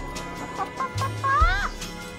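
Backyard hens clucking as they peck at kale: a few short clucks about halfway through, then a longer call that rises and falls, over background music.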